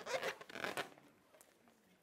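Handling noise: a few short scratchy rustles in the first second, dying away after that.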